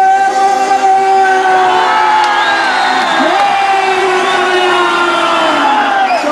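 A man singing two long held notes into a handheld microphone through a public-address system, his voice dipping in pitch between them about three seconds in, over a cheering crowd.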